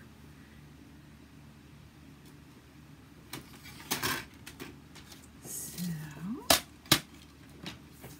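A plastic paper trimmer being handled and set down on a hard surface: after a few seconds of quiet, scattered knocks and clicks, then two sharp plastic clacks about half a second apart near the end.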